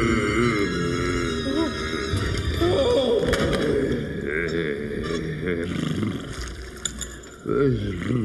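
A cartoon character's wordless vocal sounds, rising and falling in pitch, with background music underneath.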